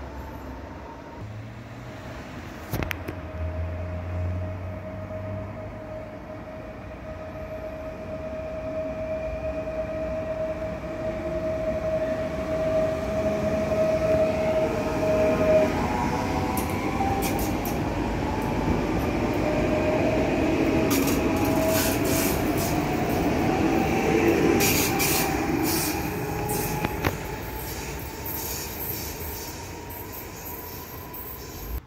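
A Koleje Śląskie electric multiple unit passenger train approaches with a steady high whine that grows louder. It then passes close by with loud wheel-and-rail noise, shifting tones and clicks for about ten seconds before fading.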